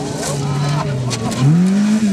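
Rally car's engine at high revs as it slides sideways on loose gravel, the note climbing sharply about one and a half seconds in and starting to drop again, over the hiss and crackle of gravel thrown from the tyres.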